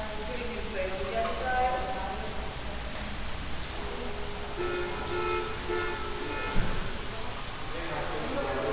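Electronic tune from a toddler's ride-on toy car: short runs of steady, stepped notes, with a single sharp knock about six and a half seconds in.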